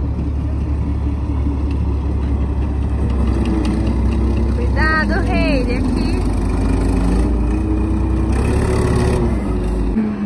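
Tracked military light tank driving slowly past, its engine running with a steady low hum and some shifts in pitch.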